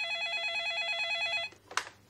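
A telephone ringing with an electronic ring that warbles rapidly between two pitches; it cuts off about a second and a half in as the phone is picked up, followed by a brief handling noise.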